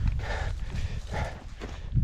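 Footsteps of a runner on a dirt mountain trail, over a low rumble on the handheld camera's microphone.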